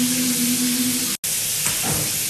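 Shower water spraying in a steady hiss, with faint music underneath; the sound cuts out for an instant about a second in.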